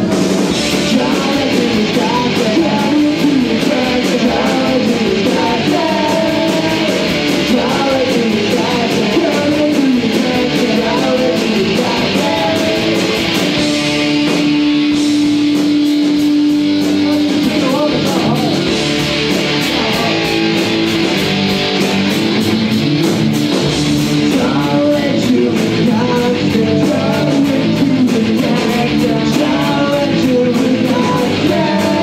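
Live punk rock band playing: electric guitars and a drum kit, with singing. A single note is held for about four seconds near the middle.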